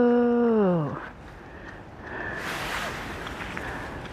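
A long, held howl-like cry on one steady pitch that drops sharply and ends about a second in. Then a quieter rushing noise that grows louder from about two seconds in.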